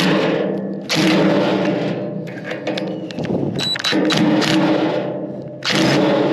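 Heavy hammer blows on the old trailer, about four strikes a second or two apart. Each blow rings on with a metallic tone that slowly dies away.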